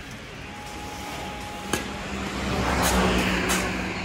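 A motor vehicle passing close by on the street. Its engine and tyre noise build to a peak about three seconds in and then fade over a steady street hum, with a single sharp knock a little before the middle.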